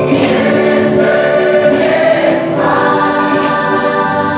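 A large mixed choir of men's and women's voices singing together in held chords. The harmony moves to a new chord about two and a half seconds in.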